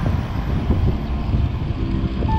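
Wind buffeting the microphone of a handlebar-mounted camera on a moving road bike: a loud, fluttering low rumble.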